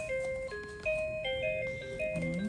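Musical crib mobile's music box playing an electronic lullaby: a simple tune of single chiming notes, about three a second.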